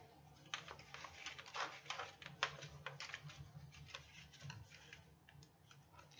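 Heavy paper being positioned and scored on a plastic scoring board: faint, irregular light clicks and taps with a few short scrapes.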